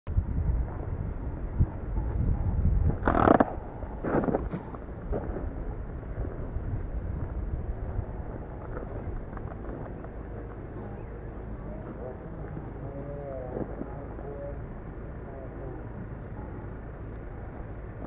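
Outdoor park ambience: wind rumbling on the microphone in the first few seconds, two short louder sounds about three and four seconds in, then faint distant voices of people.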